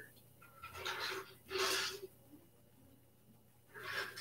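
A man breathing audibly into a clip-on microphone: two breaths, each about half a second long, a second apart.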